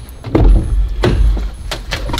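A car door opening and someone getting into the car: a low thump and rumble about half a second in, then a few sharp clicks.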